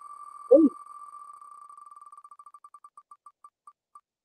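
Wheel of Names spinner's ticking sound effect as the wheel spins down: the ticks come so fast at first that they run together into one tone, then slow steadily until they are about half a second apart as the wheel comes to rest. About half a second in, a short voice sound falling in pitch is the loudest thing.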